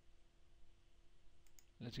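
Faint computer mouse clicks, two close together about one and a half seconds in, over near silence with a faint steady hum.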